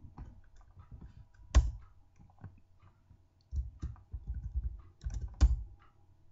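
Computer keyboard being typed on. A single sharp keystroke comes about a second and a half in, then a quick run of keystrokes from about three and a half seconds, ending in a louder key press.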